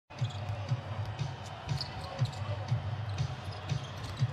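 A basketball dribbled on a hardwood court, bouncing steadily about twice a second.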